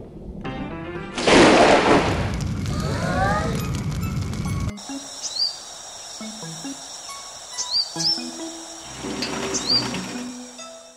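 A loud rushing noise starts about a second in, lasts some three seconds and cuts off suddenly. It is followed by a few short bird chirps over soft background music.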